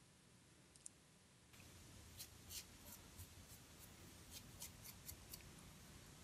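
Faint scraping of a Harry's cartridge razor drawn through lathered stubble, in short strokes about three a second, starting about a second and a half in.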